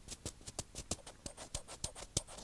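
Light, irregular clicks of fingers pressing and handling the buttons of a Teenage Engineering OP-1 synthesizer, several a second.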